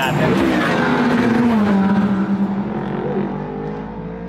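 A car engine going past at speed, its note dropping in pitch as it passes, then holding steady while slowly fading away.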